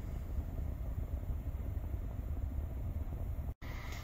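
Low, steady rumble inside the cabin of a parked 2022 Hyundai Kona, cut off for an instant near the end.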